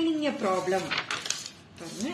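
Sheets of paper being handled and laid down on a table, with short crisp rustles and taps about a second in.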